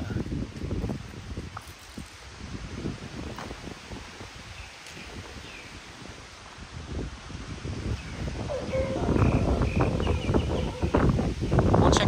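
Wind buffeting the microphone as a person walks, a low rumble that grows louder over the last few seconds, with a few faint short animal calls.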